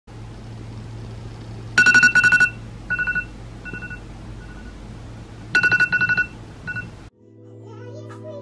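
iPhone alarm ringing: groups of rapid, high electronic beeps, loud, then softer, then loud again. It cuts off suddenly about seven seconds in as the alarm is switched off.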